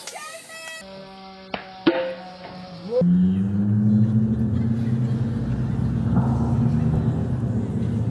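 Slowed-down audio from a phone video of a softball at-bat: drawn-out, stretched tones with two sharp knocks about a second and a half in. From about three seconds a deep, continuous low drone follows.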